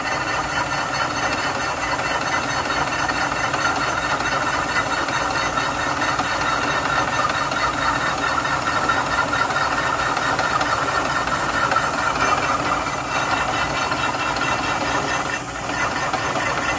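Indexable-insert face mill cutting 3/8-inch steel angle on a hand-fed milling machine, taking the mill scale off: a steady, continuous cutting noise over the running spindle, dipping briefly near the end.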